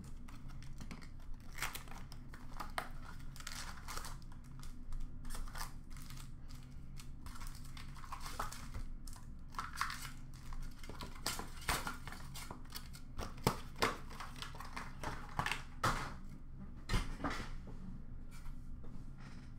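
Trading-card pack wrappers and packaging crinkling and tearing as packs are opened by hand, in irregular rustles and sharp crackles.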